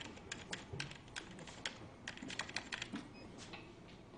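Typing on a computer keyboard: a string of quick, irregular key clicks.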